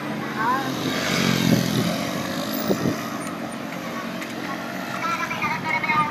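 Street noise heard while riding along a road, with motor traffic passing and people's voices nearby.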